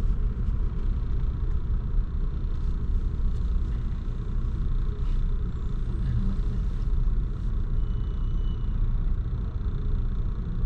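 Car idling in slow-moving traffic, heard from inside the cabin as a steady low rumble.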